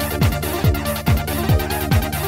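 Goa trance track with a steady kick drum on every beat, a little over two beats a second, each kick falling in pitch, over sustained synth bass tones.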